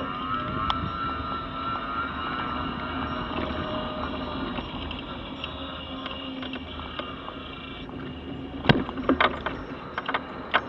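Mobility scooter's electric drive motor whining: the pitch rises over the first second as it speeds up, then holds steady over a low hum. Near the end come a few sharp knocks as the scooter jolts up from the road onto the pavement.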